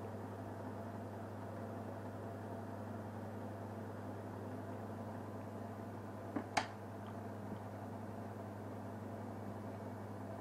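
Steady low electrical hum over faint background hiss, with two light clicks about six and a half seconds in.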